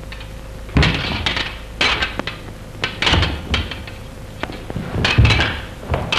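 Fencing foils clicking and clattering against each other in a bout, with heavy thumps of feet landing on the floor. The sounds come in several short flurries rather than as one steady noise.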